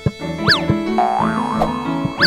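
Cartoon score with sound effects: quick swooping pitch glides that rise and fall back, boing-like, over low sustained accompaniment notes, after a sharp click at the start.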